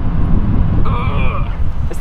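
Wind buffeting the microphone outdoors: a loud, uneven low rumble, with a faint brief voice about a second in.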